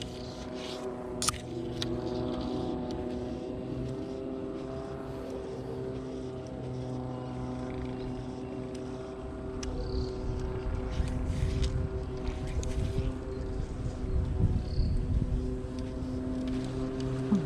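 A motor running at a steady speed, a constant droning hum that does not change in pitch. There is a sharp click about a second in, and a rougher low rumble in the second half.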